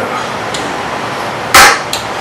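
A single loud, sharp knock about one and a half seconds in, an aluminium beer can banged down on a table, with a small click just after, over a steady room hum.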